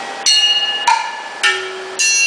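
Drumsticks striking the metal percussion of a large drum kit, bells and cymbals: three quick hits about half a second apart, each leaving several bright ringing tones, with another hit starting right at the end.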